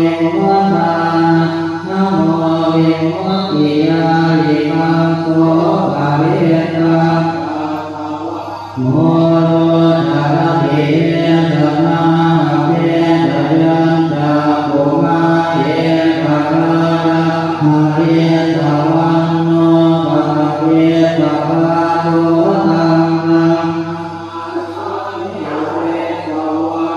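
Group of Thai Buddhist monks chanting Pali in unison during the evening chanting service, a steady recitation held close to one pitch. There is a short break for breath about eight and a half seconds in, and the chant grows softer near the end.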